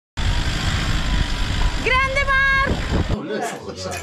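Loud rumbling noise of a vehicle on the move, with one held high note sounding for just under a second about two seconds in. The rumble cuts off suddenly about three seconds in.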